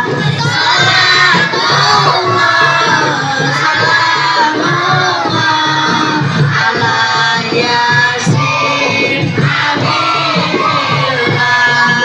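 A crowd of children and adults loudly singing a sholawat together, accompanied by marawis hand drums beating a steady rhythm.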